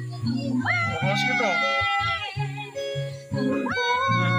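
Background pop music with a steady bass line and a voice that slides sharply up in pitch about a second in and again near the end.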